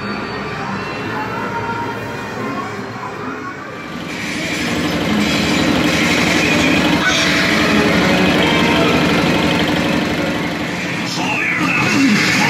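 Indoor arcade din: electronic game-machine sounds mixed with people's voices, getting louder about four seconds in.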